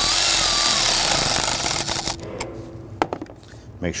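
A ratchet with a 10 mm socket tightening the nut on the car battery's negative terminal clamp: a loud, dense rattle for about two seconds that fades out, then a couple of sharp clicks about three seconds in.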